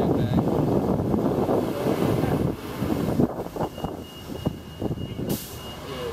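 City street traffic with a bus running close by, under indistinct voices. A thin steady tone sounds for a second or two in the middle, and a short hiss comes near the end.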